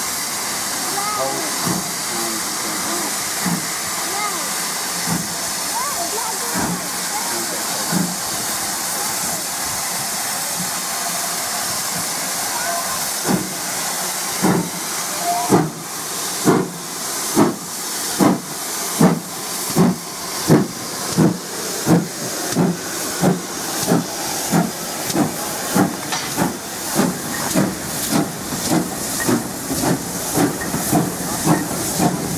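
GWR Hall-class 4-6-0 steam locomotive starting away. For about the first half steam hisses steadily, then its exhaust beats begin, loud chuffs that come faster and faster as it gathers speed.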